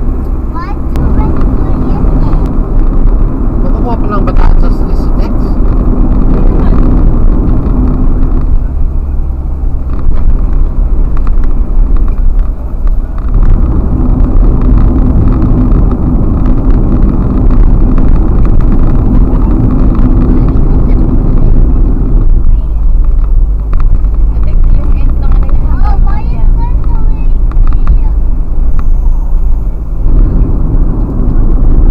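Car driving at highway speed, recorded from the car itself: a loud, steady rumble of road, tyre and engine noise whose low drone shifts in character a few times.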